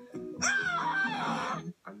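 A boy's loud, high-pitched scream, about half a second in and lasting just over a second, over plucked acoustic guitar music.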